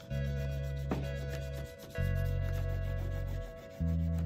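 Crayon rubbing back and forth on paper in quick scratchy strokes, over background music with low bass notes that change about every second and a half.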